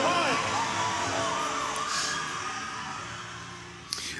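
Stadium crowd cheering and shouting, with high calls that rise and fall in pitch, fading out towards the end.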